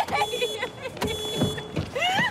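A car horn sounding in two held blasts, each under a second long, while a woman cries out in distress inside the car.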